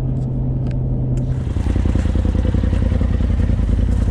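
Steady road hum inside a moving pickup's cab, then, from about a second and a half in, a Polaris RZR Turbo side-by-side's engine running at idle with a rapid, even pulse.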